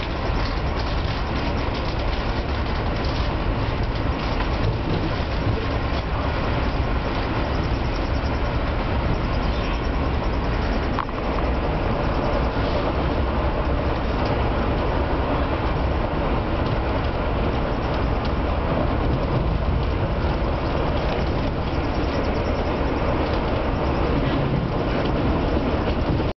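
Steady running noise of an Amtrak passenger train at speed, heard from inside a dome car: a continuous rumble of wheels on rail and the car body in motion.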